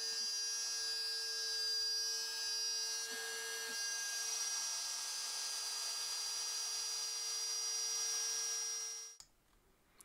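X-Carve CNC router spindle with a downcut fishtail bit cutting plywood on a profile cut, stepping down about 50 thousandths per pass: a steady high whine with the hiss of the cut. It cuts off suddenly about nine seconds in.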